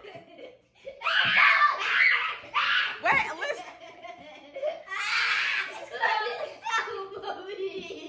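Young girls laughing and giggling in bursts, loudest about a second in and again around five seconds in.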